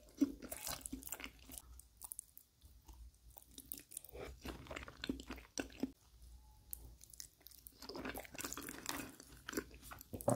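Close-miked ASMR eating of lasagna: wet chewing, lip smacks and mouth clicks coming irregularly, with two short quieter pauses between mouthfuls.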